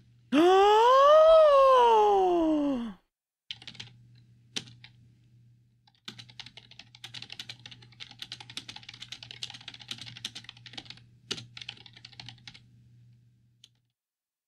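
A long wailing vocal sound, rising then falling in pitch, that lasts under three seconds and is the loudest thing here. A few seconds later comes rapid computer keyboard typing for about six seconds, over a faint steady hum.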